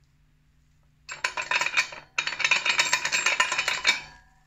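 Rapid, dense clattering and clinking in two loud runs, the first starting about a second in, a short break, then a longer run that stops just before the end.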